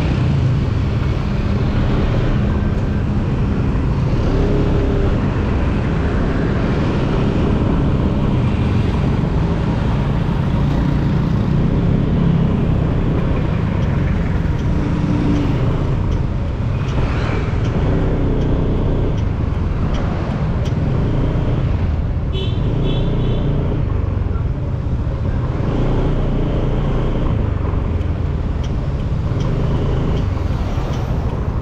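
Motorcycle riding through slow city traffic: a steady engine rumble with road and wind noise heard from the rider's seat. A brief series of short high beeps sounds about two-thirds of the way through.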